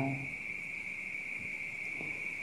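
Crickets chirring in one steady, high-pitched drone, with the tail of a man's microphone-amplified voice fading out at the very start.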